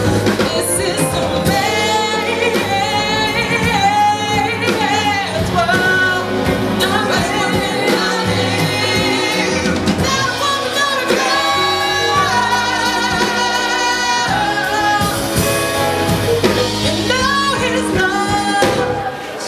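A woman singing a soul ballad live, holding notes with vibrato and melismatic runs, with female backing singers and a band with drum kit and electric guitar playing behind her.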